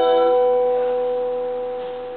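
The final guitar chord of a sung hymn ringing out and fading away, with no new notes played. A few notes die out about half a second in, and one note lingers to the end.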